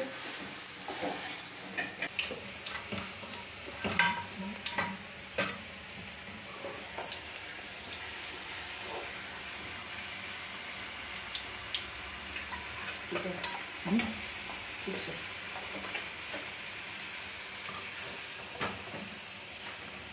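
Puris deep-frying in hot oil: a steady sizzle, with a few light knocks of a utensil against the pan.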